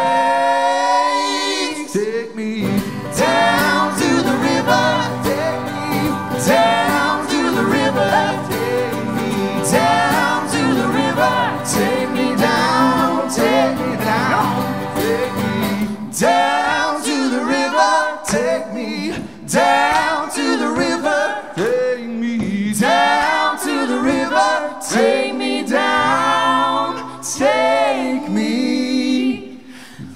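Live acoustic folk song: strummed acoustic guitar and mandolin under a woman's lead vocal with men's harmony voices. The music dips briefly near the end.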